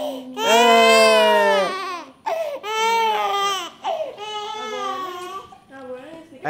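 Infant crying: three long wails, each about a second and a half, the last one softer.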